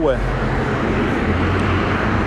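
Street traffic noise: a steady hiss of passing road traffic over a low, even engine rumble from nearby vehicles.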